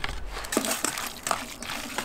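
Hand mixing wet marinated beef slices in a stainless steel bowl: irregular small clicks and rustles.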